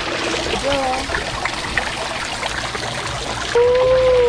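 Steady trickle of water running at a swimming pool. Near the end a person's voice holds one long note.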